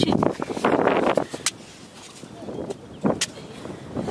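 A hoe chopping into wet mudflat mud and dragging clods of it over, a crumbling scrape in the first second or so, then a couple of short sharp knocks about three seconds in.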